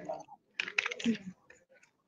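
Typing on a keyboard: a quick run of keystrokes, then a few scattered clicks, with a faint voice mixed in.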